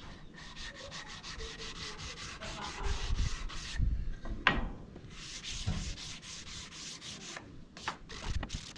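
Hand-sanding a small timber block with sandpaper: quick back-and-forth rubbing strokes, about four or five a second, pausing briefly about four seconds in and again near the end.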